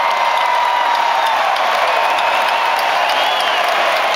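Concert crowd cheering and applauding, a loud, steady din with a few faint held notes above it.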